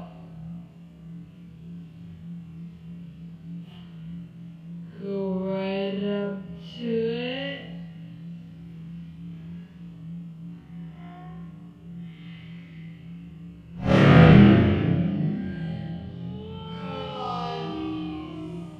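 A hydrogen-filled balloon touched off by a candle flame goes off with a single sharp, loud bang about two-thirds of the way in, which rings briefly off the room's walls. A steady music-like background with a low hum runs underneath.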